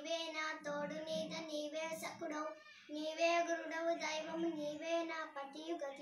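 A young girl singing a Telugu devotional verse (padyam) solo, holding long, steady notes with small ornamental turns. She breaks briefly for breath about two and a half seconds in.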